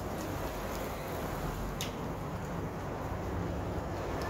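City street ambience: a steady rumble and hiss of passing traffic, with one short sharp click about two seconds in.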